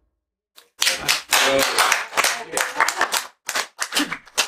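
Audience clapping at the end of a talk, starting about half a second in and running on in dense, quick claps.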